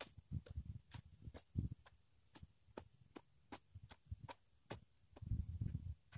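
A hoe blade chopping and scraping into dry soil and grass roots: dull thuds, heaviest near the end, amid a run of sharp ticks about two or three a second.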